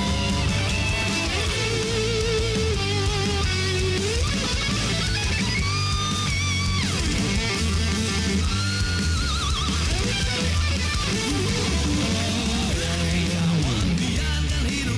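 Hard rock instrumental break: an electric lead guitar solo with slides, bends and vibrato over bass guitar and drums.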